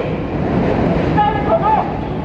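A steady low rumble of city noise runs throughout. About a second in, a raised voice starts speaking over it.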